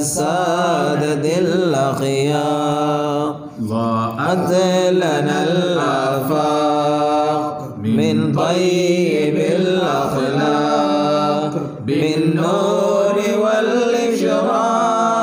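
Arabic devotional chanting of a Mawlid poem: a voice holds long, melismatic notes with wavering pitch. It breaks briefly for breath about three and a half, eight and twelve seconds in.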